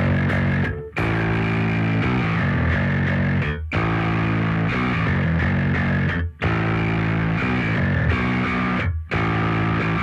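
Rock band's instrumental intro played live: distorted electric guitars and bass playing a heavy riff. The riff cuts out for a split second four times, about every two and a half seconds.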